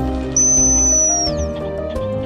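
Background music, joined about a third of a second in by one long, high, steady whistle note lasting about a second. The note slides quickly downward as it ends.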